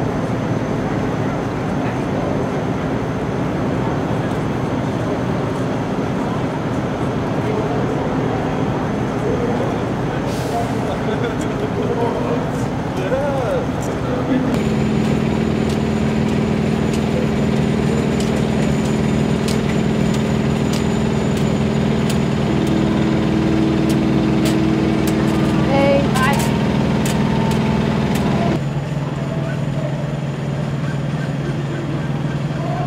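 Steady outdoor traffic noise with idling trucks. About halfway through it changes suddenly to a steady low drone of several held tones, with scattered sharp knocks.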